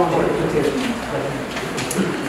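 Several people talking at once in a room: overlapping voices with no clear words.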